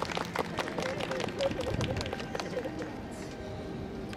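Street marching band performance: a quick run of sharp taps for the first two seconds, with a wavering, voice-like line over it, then a quieter stretch near the end.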